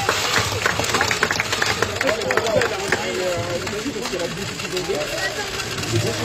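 Motorized stadium of a Beyblade Burst Speedstorm Motor Strike battle set running with a steady rattling hum. A quick run of plastic clicks sounds in the first two seconds or so as the spinning tops clash and are handled.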